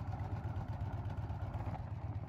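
Harley-Davidson V-twin engine running at low revs while the motorcycle cruises at about 20 mph: a steady low rumble of even firing pulses.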